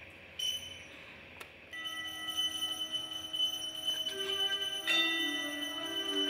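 Altar bells rung at the elevation of the host and chalice during Mass, marking the consecration. It is quiet at first; the ringing starts about two seconds in, with fresh strikes near four and five seconds, each leaving long, sustained tones.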